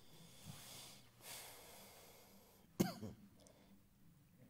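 A man breathing, two soft breaths, then one short cough a little under three seconds in.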